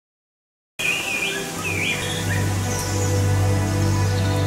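Silence, then about a second in sound starts abruptly: a small bird chirping a few short calls over background music that carries a steady low drone.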